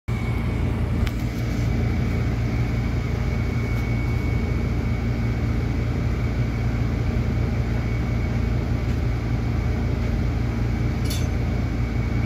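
Steady low machine hum with a thin constant high whine, typical of room ventilation or air-conditioning. A faint click comes about a second in and a sharper light click near the end.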